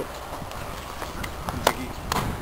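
Quiet outdoor background with a few faint, scattered clicks or taps, and one short spoken word near the end.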